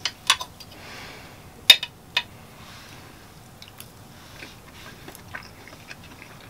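Metal forks clinking against a ceramic plate as they dig into a puff-pastry-topped pie: a few sharp clinks in the first two seconds or so, then quieter ticks of cutlery and soft chewing.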